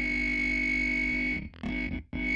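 Rock song intro: a distorted electric guitar chord, heavy with effects, held steadily, then cut into short choppy stabs about one and a half seconds in.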